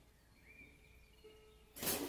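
Quiet room tone with a few faint, thin whistly tones in the first half, ending in a short, loud rush of noise just before speech resumes.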